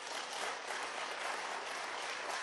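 Members of parliament applauding, a steady spread of many hands clapping.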